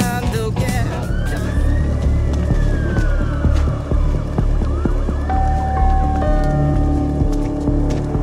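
A siren wailing in two slow rising-and-falling sweeps over a low rumble, with music; steady held tones come in about five seconds in.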